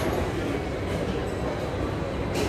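Steady low rumble of restaurant room noise, with no single clear event.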